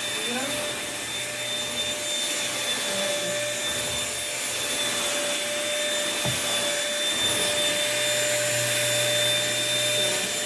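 A small corded bagless stick vacuum cleaner running steadily, a constant whine over the rush of its motor and airflow.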